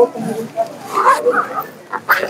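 Indistinct voices of people talking in the background, with a brief louder vocal sound about a second in.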